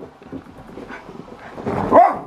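A dachshund's paws patter on a wooden floor as it runs after a thrown rubber bone, then a dog barks, louder, near the end.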